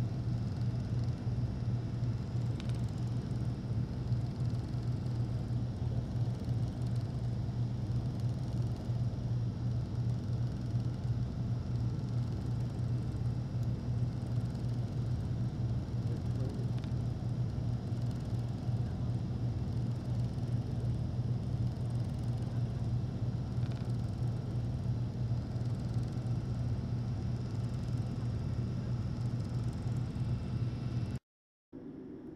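Speedboat engine running steadily under way, a continuous low drone that holds the same pitch and level throughout.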